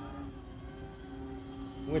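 E-flite Convergence VTOL's three electric motors and propellers droning steadily while it hovers and manoeuvres in multi-rotor mode: a low even hum with a faint high whine over it.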